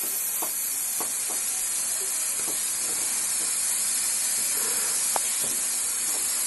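Aerosol spray can let off in one long unbroken burst: a steady high hiss, with a few faint ticks.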